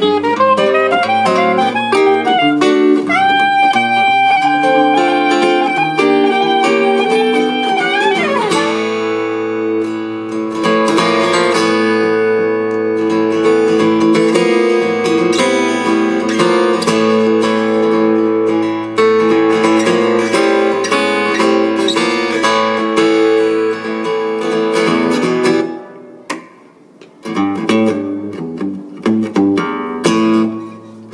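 Live soprano saxophone and acoustic guitar duet: the saxophone holds one long, slightly bent note for about the first eight seconds. Then the acoustic guitar carries on, strumming steadily, with a short pause near the end before it picks up again.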